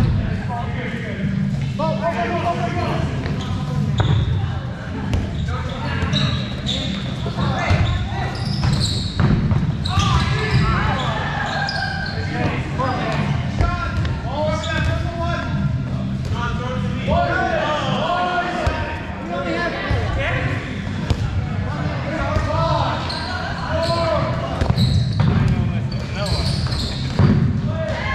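Dodgeballs thudding and bouncing off the floor, walls and players, scattered impacts throughout, amid indistinct shouts and chatter from players, all echoing in a large gymnasium.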